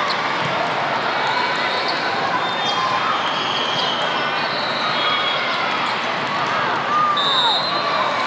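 Indoor volleyball play in a large, echoing hall: ball contacts and bounces on the court and sneakers squeaking on the sport-court floor over a steady din of crowd voices.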